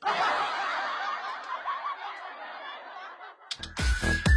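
Laughter from many voices, starting suddenly and fading over about three seconds. An electronic dance track with a heavy beat starts near the end.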